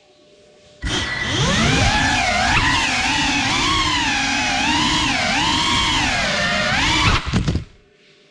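GEPRC Cinelog 35 cinewhoop's brushless motors and ducted props whining as it spools up about a second in, the pitch rising and wavering with the throttle. Near the end there are a few quick knocks as the quad crashes, and the motors cut out.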